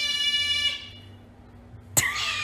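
Otter giving a shrill, high-pitched cry, held on one steady pitch for about a second and then fading away. A sharp click comes right at the end.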